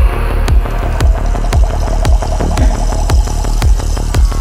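Psybient electronic music: a steady four-on-the-floor kick drum about twice a second over deep bass, with crisp hi-hat ticks and sustained synth tones.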